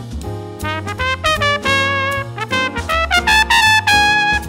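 Trumpet playing a jazz solo line, a string of notes that climbs higher and gets louder in the last second or so.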